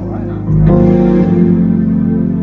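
Hammond organ playing held chords, with a louder new chord coming in about half a second in.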